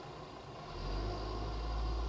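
Garbage truck's engine rumbling low as it drives away, swelling about a second in, muffled through a closed window.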